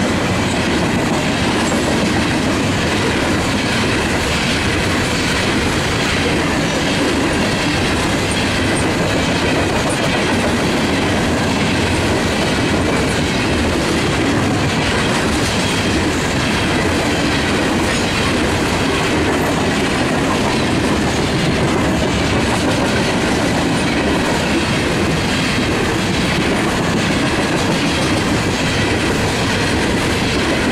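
Long string of freight cars, open-top coal hoppers and gondolas, rolling past at a steady speed: the steel wheels clickety-clack on the rails over a continuous loud rumble.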